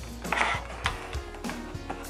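Clear plastic packaging insert crackling and clicking several times as it is pulled open and a vinyl figure is lifted out, over light background music.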